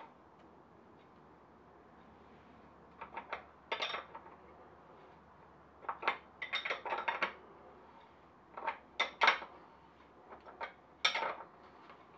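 Steel ring spanner clinking against the rear axle nut and the metal around it as it is fitted and worked: about five short groups of sharp metallic clinks with quiet between.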